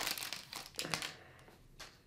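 Trading card pack's foil wrapper crinkling as it is torn open and handled. The rustling is loudest in the first second and fades, with one short rustle near the end.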